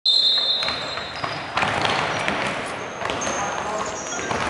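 A referee's whistle blows one steady blast of about a second to start the dodgeball opening rush. Then come players' footfalls and sneaker squeaks on the hardwood court, with voices calling.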